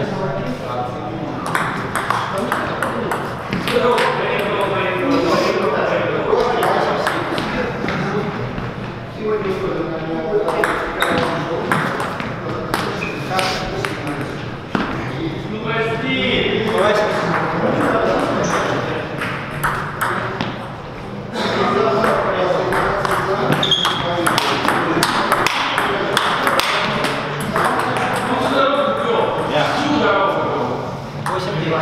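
Table tennis play: the celluloid ball clicking off rubber paddles and bouncing on the table in repeated rallies and serves, with voices talking throughout.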